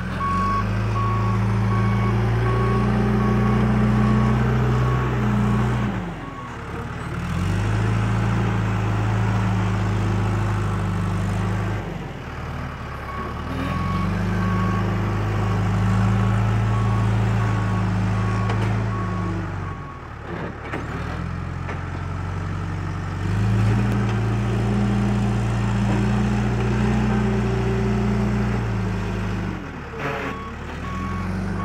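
John Deere 310-series backhoe loader's diesel engine running under load as it pushes dirt. Its pitch holds steady through long stretches and drops briefly several times as the machine changes direction. Its reverse alarm beeps steadily through roughly the first six seconds and again in the middle.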